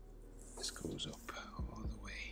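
Felt-tip marker squeaking and scratching across paper as a long curved stroke is drawn, with two soft knocks near the end.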